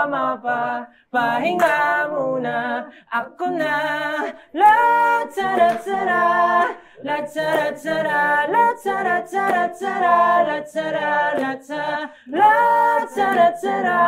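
A group of young men singing a song together a cappella, unaccompanied voices carrying a melody in phrases with brief breaks between them.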